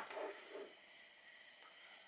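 Faint, steady electronic buzzing from a Zettaly Avy Android smart speaker sitting in standby mode. The owner guesses the battery is being charged, and the noise stops once the unit leaves standby. Insect noise from outside is faintly mixed in.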